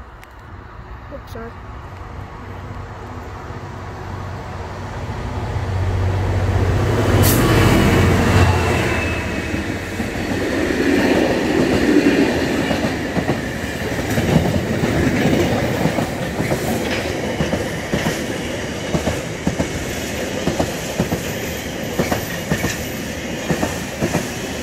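Class 66 diesel locomotives with their two-stroke V12 engines approach and pass close by, the low rumble building to its loudest about eight seconds in. A long rake of engineering wagons loaded with rail follows, rattling past with a steady clickety-clack of wheels over the rail joints.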